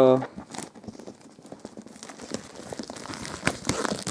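Clear plastic wrapping crinkling as it is handled, a dense run of small, irregular crackles that gets busier toward the end.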